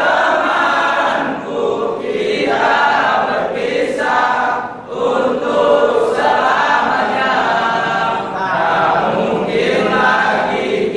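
A large group of male voices singing together as a choir, phrase after phrase with short breaks between them.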